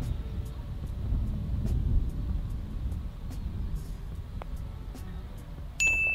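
Low wind rumble on the microphone, strongest about two seconds in. A light click comes about four and a half seconds in, the putter striking the ball, and a sharp, bright ringing tone starts just before the end.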